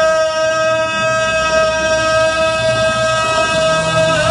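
A male singer holds one long, steady high note into a microphone through a live concert sound system; the note ends near the end and the singing moves on.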